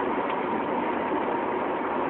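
Steady car interior noise from a running vehicle, with a faint steady hum.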